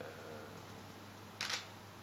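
A camera shutter fires once, a short sharp click about one and a half seconds in, over a steady low room hum.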